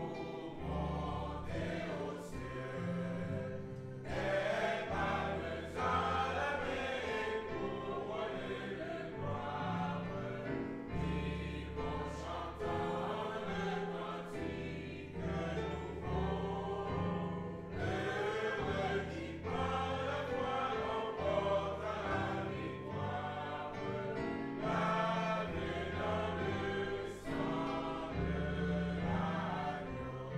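A choir singing a gospel hymn over held low accompanying notes.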